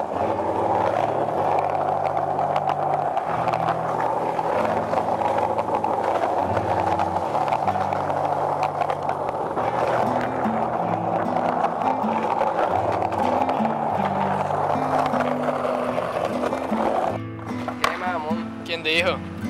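Background music with a stepping bass line over the steady rolling of skateboard wheels on a concrete sidewalk; the rolling stops about a second before the end.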